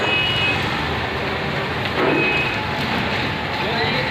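Busy street ambience: steady traffic noise with indistinct voices, and a couple of brief high tones near the start and about two seconds in.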